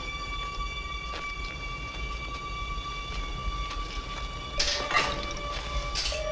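Tense film score of long, steady held tones over a low rumble. A brief rushing noise rises and falls about four and a half to five seconds in.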